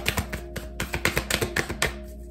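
A deck of large oracle cards being shuffled overhand by hand: a quick, irregular run of card flicks and taps.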